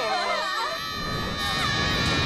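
Several cartoon spectators wailing and sobbing in long, high, wavering cries, with a low rumbling noise underneath from about halfway.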